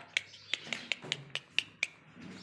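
A rapid, slightly irregular series of sharp, high clicks, about four a second, stopping just before the end.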